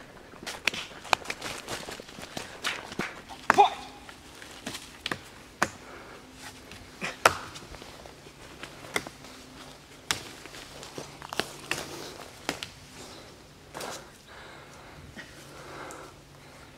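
Scattered, irregular sharp taps and scuffs of bare hands and feet gripping and shifting on a thin tree trunk during a barefoot climb. A brief voice sound comes about three and a half seconds in.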